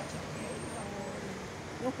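Faint murmur of voices over a steady outdoor background hum, with a couple of thin, high-pitched whistles in the first second.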